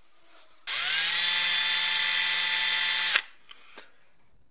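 A small electric power tool spins up, rising in pitch, runs steadily for about two and a half seconds, then stops abruptly.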